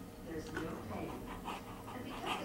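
A dog panting close by in quick, uneven breaths.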